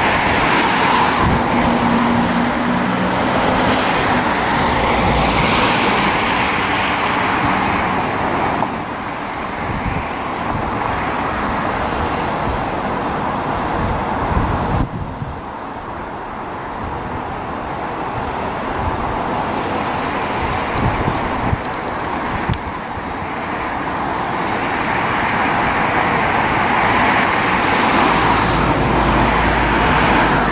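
Steady rumble of engine and traffic noise, dipping somewhat in the middle and rising again near the end, with a few short high chirps in the first half.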